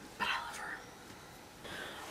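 A woman's soft spoken word, then a quiet pause in her talk with a faint breathy sound near the end.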